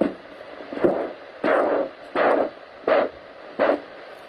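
Handheld Doppler ultrasound probe on the ankle picking up an arterial pulse: five evenly spaced pulsing beats, about one every 0.7 seconds, over a steady hiss. It is a strong signal, the sign of good blood flow through the leg's popliteal-to-distal vein bypass.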